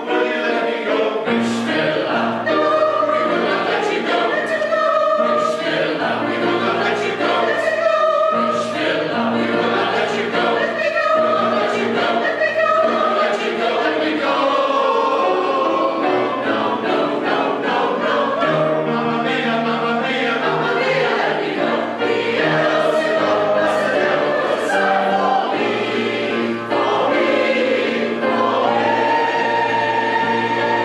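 Mixed-voice choir of women and men singing in parts, with sustained notes changing every second or so, accompanied by piano.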